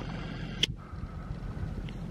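Low, steady rumble of wind on the microphone outdoors, with one sharp click about a third of the way in.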